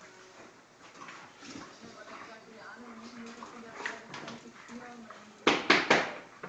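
Dogs and puppies playing and scuffling on a tiled floor, with low vocal sounds, then three loud sharp noises in quick succession near the end.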